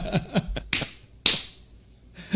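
Men laughing for about half a second, then two sharp smacks half a second apart. The second smack is the loudest sound and has a brief hissing tail.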